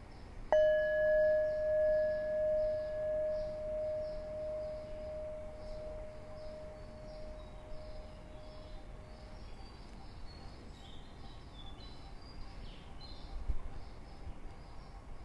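A meditation bell struck once, its tone wavering slowly in loudness as it fades away over about nine seconds. A steady chorus of night insects chirps underneath, with a soft knock near the end.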